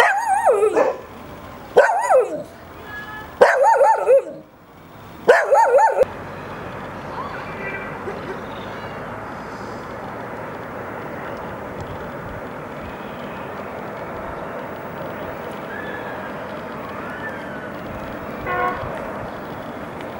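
Small shaggy dog howling in four short, wavering calls over the first six seconds, then a steady background hiss.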